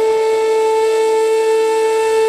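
Indian flute music: the flute holds one long, steady note.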